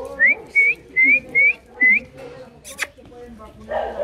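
A person whistling five short rising notes in quick succession, followed by a single sharp click.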